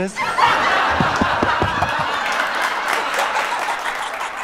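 Studio audience laughing at a sitcom punchline. The laughter swells up at once and slowly dies away over a few seconds.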